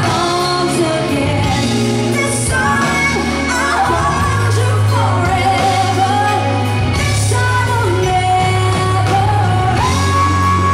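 A woman singing lead live into a handheld microphone with a band and electric guitar, her line climbing into long held notes about midway and again near the end.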